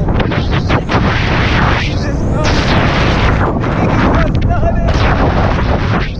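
Heavy wind buffeting on the microphone of a camera riding a moving roller coaster, with sharp gusty thumps, and a few faint shouts from the riders about midway.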